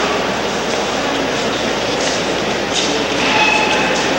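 Steady, loud din of many indistinct voices and footsteps echoing through the stone interior of a large Gothic cathedral, with no single sound standing out.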